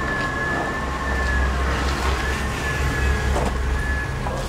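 A distant emergency-vehicle siren: one high tone wavering slowly up and down over a steady low rumble.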